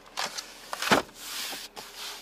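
Handling of the car's folding rear-seat armrest and pass-through flap: a few light clicks, then a sharp knock about a second in, the loudest sound. Right after it, a brief rubbing as a hand brushes over the leather seat.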